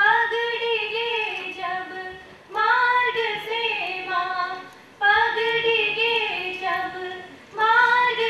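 Two women singing together at a lectern, in sung phrases of about two and a half seconds, each starting strongly, holding long notes and falling off in pitch and loudness at its end.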